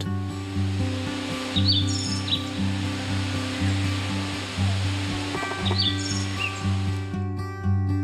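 Soft acoustic background music over a steady hiss of outdoor ambience, with two short bursts of high bird chirps, about two seconds in and again near six seconds. The ambience stops about a second before the end, leaving only the music.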